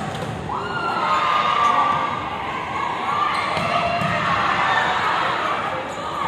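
Arena crowd shouting and cheering during a volleyball rally, many voices held in sustained yells that swell about a second in.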